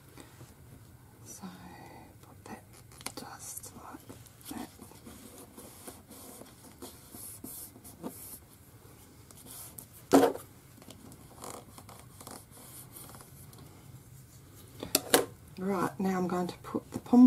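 Paper and card stock being handled and pressed down on a cutting mat: soft rustling and scraping, with one sharp tap about ten seconds in and another shortly before a voice comes in near the end.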